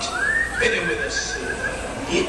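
A horse whinnying in a recorded ride sound effect: one call that rises in pitch and then breaks into a quick, quavering run lasting over a second.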